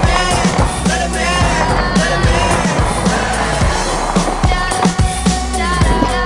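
Music with a deep, repeating bass beat, mixed with a skateboard's wheels rolling on hard paving and the board knocking against the ground during tricks.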